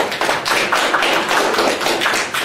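A small audience applauding: dense, steady clapping of many hands.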